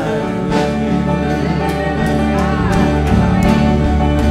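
Live worship band playing a gospel song in the church: guitar and bass with regular drum or cymbal hits, and singing. A deep bass line comes in about half a second in.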